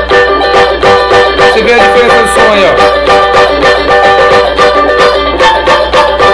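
Electric banjolim (banjo-bodied mandolin) played through a small amplifier speaker, with quick picked notes at about six strokes a second. A steady electrical hum runs underneath, which the player puts down to a poor sound system.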